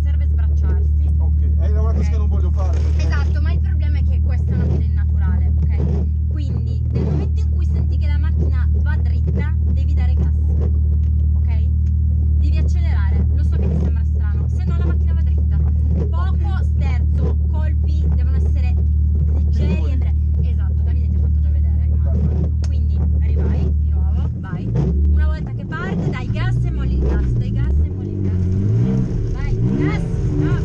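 Drift car's engine idling steadily, heard from inside the stripped cabin under people's voices; near the end the engine note turns uneven, rising and falling.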